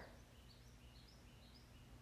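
Near silence: room tone with a run of faint, short high chirps.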